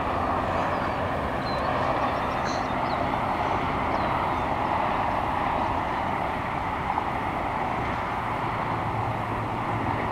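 Rattlesnake rattling its tail in a steady, unbroken buzz: a defensive warning.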